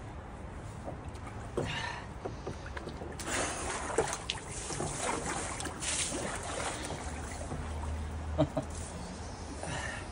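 Ice-bath water sloshing and splashing, with floating ice knocking, as a man steps into a plastic tub of ice water and lowers himself fully under. The water noise is busiest from about three seconds in until he is under, around seven seconds in.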